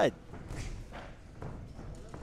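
Faint hall ambience with a few soft, low thuds from the boxing ring.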